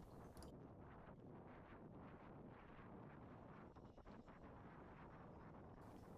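Near silence: only a faint, even background hiss.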